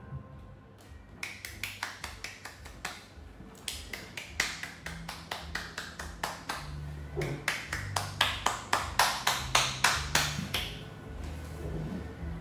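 One person clapping hands in a quick, even rhythm, the claps getting louder before they stop near the end.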